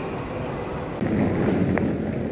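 Steady background noise of a large hall, then about a second in a louder rumble and clatter of a wheeled suitcase being rolled over a ribbed floor.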